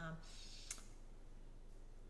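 A single short, sharp click about a third of the way in, over quiet room tone.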